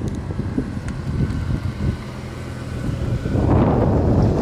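A 1999 Plymouth Prowler's 3.5-litre V6 engine running as the car drives toward the camera, a steady low rumble that grows louder and fuller near the end as it comes close.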